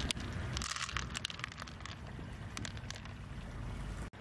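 Low, steady wind rumble on the microphone, with a scattering of light, sharp clicks from handling between about half a second and three seconds in.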